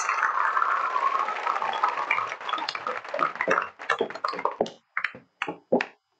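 Audience applauding, dense at first and thinning to scattered single claps that die away in the last couple of seconds.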